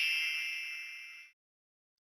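A single bell-like chime rings out and fades away over about a second and a half, marking the break between one tip and the next in a recorded listening-test passage.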